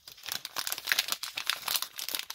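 Foil wrapper of an opened Pokémon card booster pack crinkling in the hands as it is handled and folded, a dense run of quick, irregular crackles.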